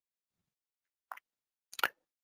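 Mostly silence, with a short soft pop about a second in and two or three quick clicks near the end.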